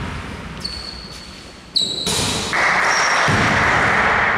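A referee's whistle in a gym: a faint steady high tone, then a short, sharp, louder blast about two seconds in, followed by a steady hiss.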